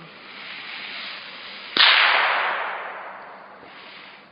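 A single gunshot a little under two seconds in: a sharp crack followed by a long echo that fades out over about a second and a half, over a background rushing noise.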